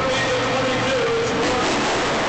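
Monster truck engines running in a stadium, a loud steady din, with a wavering held tone that fades out near the end.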